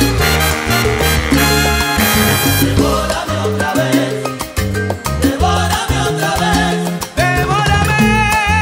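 Live salsa band playing: a bass line and dense percussion under pitched melody lines, with a brief dip in loudness just before the end.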